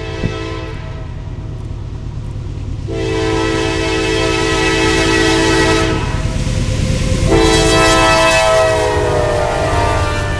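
CSX diesel freight locomotive's multi-chime air horn blowing a series of blasts, a long one in the middle and a shorter one after it, with the pitch of the last blast dropping as the locomotive passes close by. Under the horn the rumble of the engine and wheels grows louder as the train arrives.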